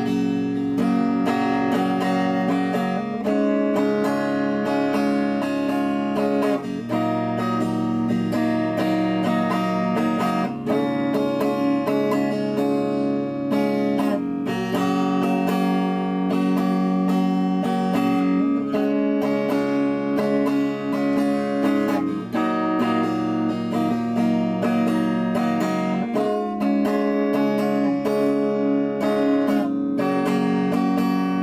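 Yamaha electric guitar, plugged in, strummed continuously, its chords changing every second or two.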